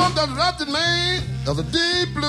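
Live electric blues band playing: a steady low bass line under a lead line that glides up in pitch at the start, then holds wavering, bent notes.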